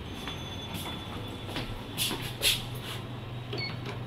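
Glass revolving door turning, with a low steady hum that grows in the second half and short scuffing sounds, the loudest about two and a half seconds in.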